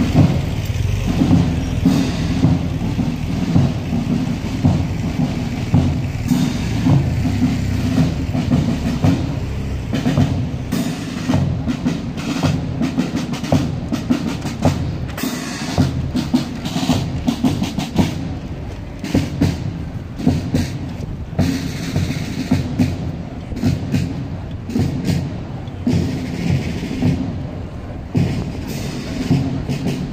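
Norwegian military marching band playing a march live: brass chords over a steady bass drum beat with cymbal strokes.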